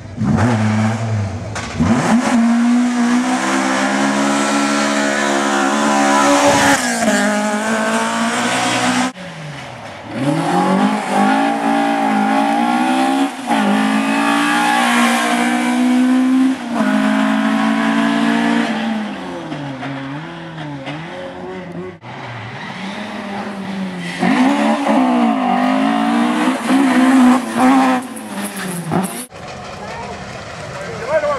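Rally car engines revving hard, the pitch climbing through each gear and dropping at every change, with tyre squeal. Three clips are cut together, with sudden breaks about nine seconds in, about twenty-two seconds in and near the end; the first is a Ford Escort Mk2.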